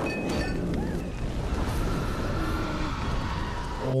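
Horror film soundtrack: a steady, low rumble of sound effects with music under it.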